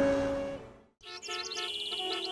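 A held music chord fading out, a brief silence just before halfway, then rapid bird chirping over soft sustained music.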